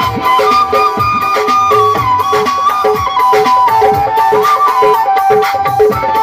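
Instrumental passage of Saraiki folk music played live: a flute melody with slides and ornaments over harmonium, with a steady, repeating hand-drum rhythm underneath.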